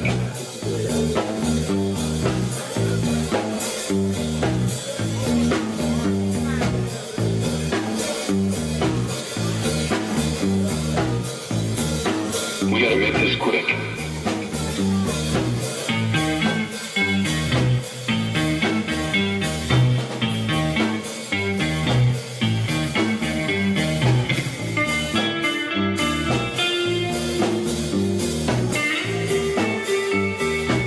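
Live rock band playing: electric bass, drum kit and electric guitar, with a busy, steady beat. About halfway through, a quicker guitar line comes up above the band.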